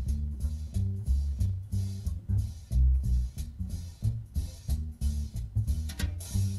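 Small-group jazz rhythm section playing: an upright bass walking steadily at about three notes a second, the loudest part, with drums keeping time on the cymbals.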